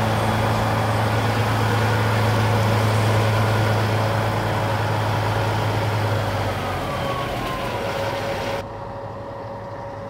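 Diesel engine of a semi truck hauling a livestock trailer, idling with a steady low hum. A loud steady hiss lies over it and cuts off suddenly near the end.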